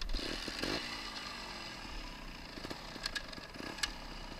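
Trial motorcycle engine running. Its revs fall away over the first couple of seconds, then it runs steadily, with two sharp clicks near the end.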